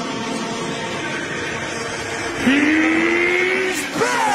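A steady rushing noise, then about two and a half seconds in a louder held tone that swoops up and keeps rising slowly: a build-up in an edited montage soundtrack, leading into music.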